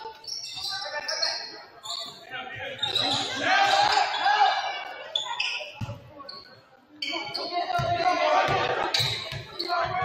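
Basketball dribbled on a hardwood gym floor, its bounces repeating, mixed with short high sneaker squeaks and players' shouted voices, all echoing in the large hall. The sound dips briefly past the middle, then the dribbling picks up again.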